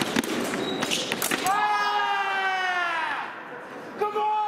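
A sabre fencing exchange: sharp clicks and thumps of blades meeting and feet stamping on the piste in the first second and a half, then one long, slightly falling yell from a man as the touch lands.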